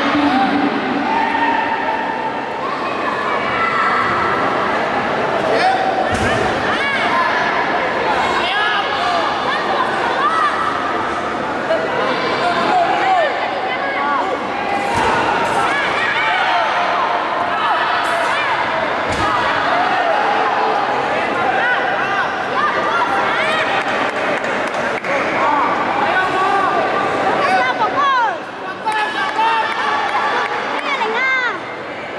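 Many voices shouting and calling out in a large hall, with a few sharp thuds as pencak silat fighters strike and throw each other onto the mat.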